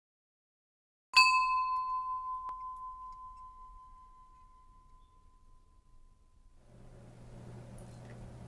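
A meditation bell struck once, giving a clear ringing tone that fades away over about five seconds, marking the start of the meditation practice.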